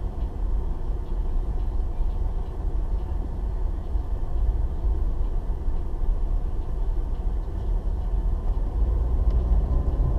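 Steady low rumble of a car driving slowly in traffic, heard from inside the cabin: engine and tyre noise with no distinct events.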